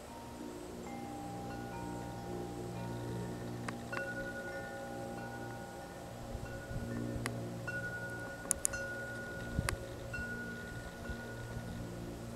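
Ringing chime-like tones: several held notes at different pitches come in one after another and overlap, with a few sharp clicks in the second half.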